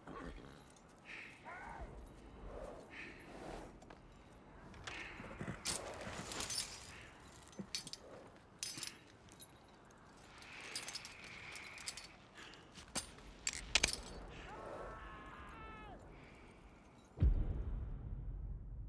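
Quiet film soundtrack of scattered light metal clinks and jangles with soft crunches. About three-quarters of the way through comes a short pitched call that falls in pitch. A deep boom sounds just before the end.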